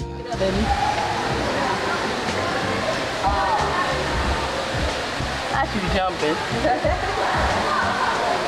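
Indoor waterfall with a steady rush of falling water that starts suddenly with a cut and keeps an even level.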